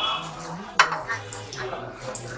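A plastic scoop knocking against a metal cooking pot as washed rice is scooped in from a colander, with one sharp clack a little under a second in and lighter clicks and scraping around it.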